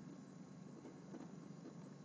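Near silence: faint room tone with a faint, high, rapidly pulsing hiss.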